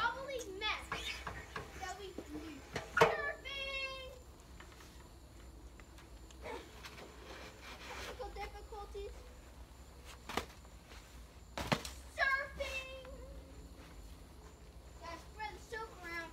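Children's voices calling out and squealing in short, high-pitched shouts as they play, with a sharp knock about three seconds in and another near twelve seconds.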